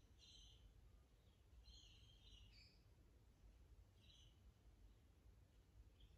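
Near silence: a faint low room hum, with a few faint, high bird chirps near the start, around two seconds in and again about four seconds in.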